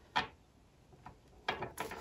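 Oracle cards handled in the hands: a single short card snap about a quarter second in, then a quick run of clicking card flicks and slides in the second half.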